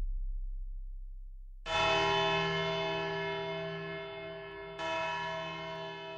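A church bell struck twice, about three seconds apart, each stroke ringing on and slowly fading. Before the first stroke, a low tone fades away.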